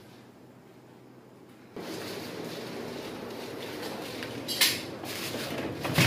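Plastic ceiling panels being handled and fitted: a steady rustle and scrape of the panels, with two sharp plastic knocks, one past the middle and one at the end.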